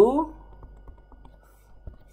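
Light, irregular clicks and taps of a stylus on a tablet screen while handwriting, with a slightly stronger tap near the end.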